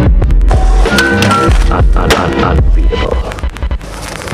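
Music track with heavy bass, drums and sustained synth notes, with skateboard sounds mixed in. The music thins out in the last second.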